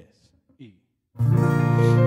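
A woman's soft spoken 'and' ending a count-in, then about a second in a guitar and piano start the song's intro together with a held, ringing chord.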